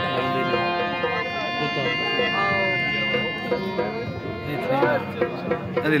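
Harmonium holding sustained reed chords through a PA system, with voices talking over it.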